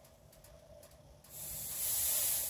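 Oxyacetylene cutting torch hissing as its valve is opened to purge the gas lines, bleeding the hoses empty. The hiss starts about a second in and swells louder toward the end.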